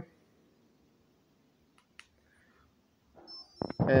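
Near silence with one faint click. Then, as the motor is switched on, the electronic speed controller sounds a steady high-pitched beep through the small brushless outrunner motor, with a couple of short knocks just before the end.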